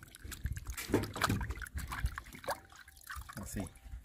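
Water splashing and dribbling in a glass bowl as hands rub and rinse a piece of cooked snail meat, in a run of irregular small splashes.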